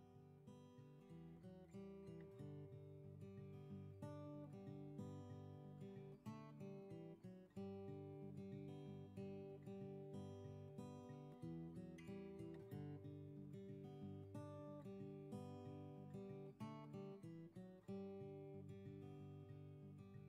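Soft acoustic guitar music, a steady run of picked notes.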